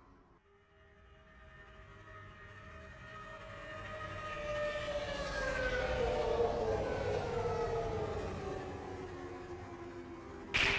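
Electronic synthesizer tones swelling up from quiet, several pitched lines held together and then gliding slowly downward from about halfway through, like a falling siren, before easing off.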